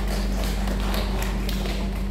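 Steady low electrical hum, with a few light taps in the first second or so.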